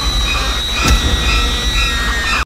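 A loud, held cartoon scream of fright, harsh and shrill, with a deep rumble underneath.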